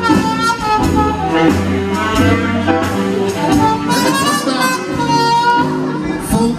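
Live big-band jazz orchestra playing with the choir on stage: a held melody line moving from note to note over a bass line.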